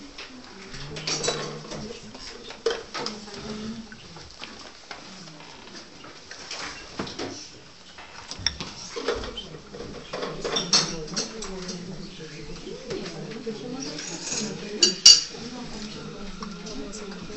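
China cups, saucers and teaspoons clinking at the table, scattered light clinks with a louder cluster of sharp clinks near the end, under low murmured chatter.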